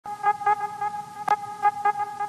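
Intro jingle: a held synthesized tone with even overtones, pulsed in repeated accents about three times a second, with one sharp click just past a second in.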